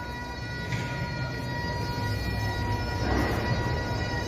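A steady, high-pitched held tone with several overtones, over a low background rumble.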